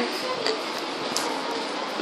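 Steady background hiss with a faint voice briefly about half a second in.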